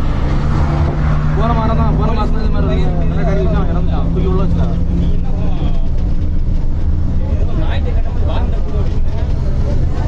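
Bus engine and road noise heard inside the passenger cabin of a moving bus: a steady low drone and rumble with voices talking over it.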